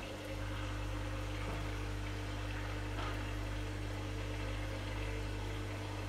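Steady low mechanical hum, unchanging in pitch and level, over a faint even hiss.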